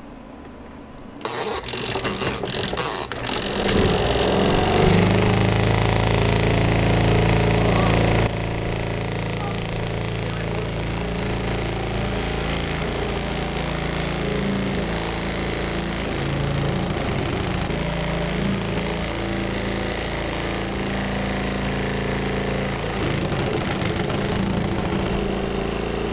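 Zeny mini portable washing machine's spin dryer started by its timer knob: a few clicks, then the motor spins up into a steady loud hum with the whole unit shaking, like "its own earthquake". The level drops about eight seconds in and the spin runs on steadily.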